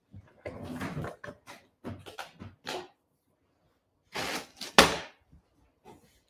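Rustling and light knocks as craft pieces are handled on a wooden tabletop, with one sharp knock about five seconds in, the loudest sound.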